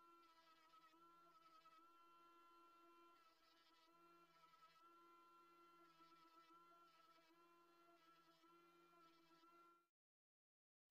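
Near silence: only a faint steady whine is heard.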